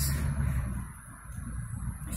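Low rumble of road traffic, easing off about halfway through before building again.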